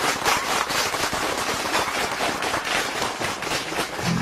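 Live audience applauding steadily, a dense clatter of many hands clapping.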